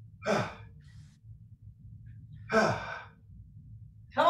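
A person lets out two loud, breathy sighs of exertion while working with dumbbells, about two seconds apart, each falling in pitch.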